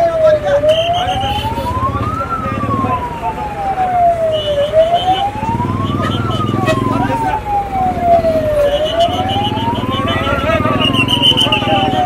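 A siren wailing slowly up and down, about one rise and fall every four seconds, over the low running of a diesel engine and voices in a crowd. A few short high beeps come and go.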